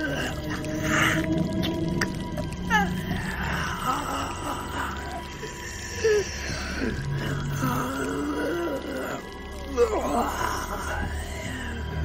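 Horror sound effect of a creature's guttural, pained moaning: wavering, gliding wails over a low droning music bed, with two sharper cries about six and ten seconds in.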